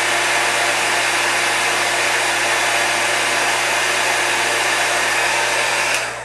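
Embossing heat gun running steadily, blowing hot air to melt a layer of Ultra Thick Embossing Enamel powder on a small paper die-cut; it stops at the very end.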